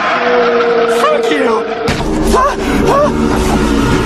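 Horror-film sound design: a held droning tone with several short squealing cries that rise and fall, joined by a deep rumble that comes in suddenly about two seconds in.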